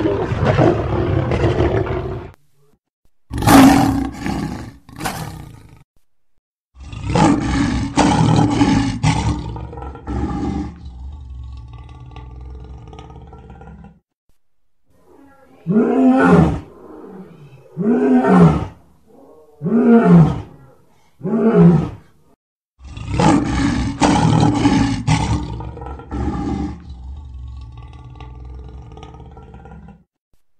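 African lion roaring: several long, deep roars separated by short silences, and around the middle a run of four short calls, each rising and falling in pitch, about two seconds apart.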